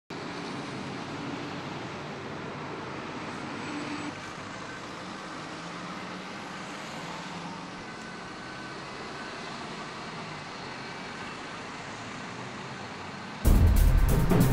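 Steady motorway traffic noise, an even rushing hum of road vehicles. Loud music starts abruptly near the end.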